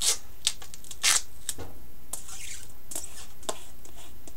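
Hands rubbing and pressing duct tape down over aluminium foil on a glass plate: a series of short rustling, crinkling scrapes, the loudest about a second in.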